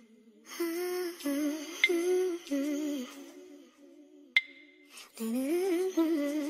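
A woman humming a slow, wandering melody, with a quieter break midway. Two sharp clicks with a brief ringing tone cut through, one about two seconds in and another past four seconds.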